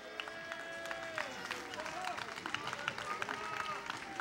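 Church congregation praising aloud: many overlapping voices calling out and singing, with scattered hand claps.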